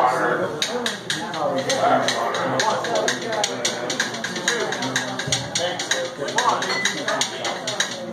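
A small blues band loosely playing and tuning up with no song under way yet, with a run of quick, even taps from the drum kit, over voices in the room.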